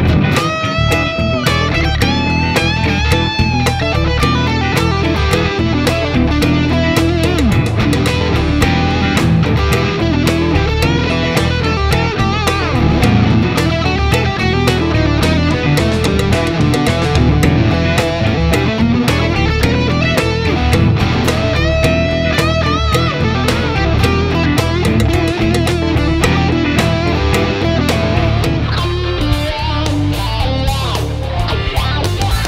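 Epiphone Les Paul-style electric guitar playing an improvised solo over a backing track.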